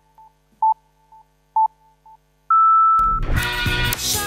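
Electronic countdown beeps: two short beeps about a second apart, each with a faint echo, then a longer, higher-pitched beep, after which music starts about three seconds in.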